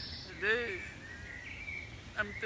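A man's voice, one short spoken sound about half a second in, over outdoor background noise, with a faint, thin, steady high tone through the latter half.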